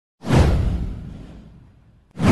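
A whoosh sound effect with a deep low rumble under it. It hits suddenly about a quarter second in, sweeps down in pitch and fades away over about a second and a half.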